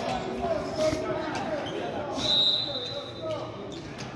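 Echoing gym ambience: players' and spectators' voices carry in the hall, with a volleyball bouncing on the hardwood floor. A short, high, steady squeak sounds about two seconds in.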